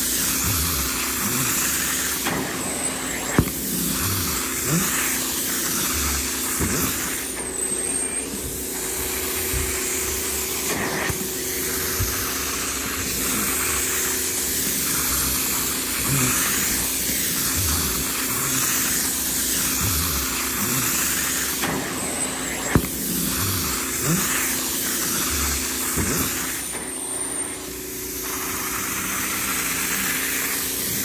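Upholstery extraction tool drawn over sofa fabric in repeated strokes: a steady hiss of suction and spray through the hose and wand over a steady machine hum. The hiss dips briefly several times between strokes, and there are two sharp clicks.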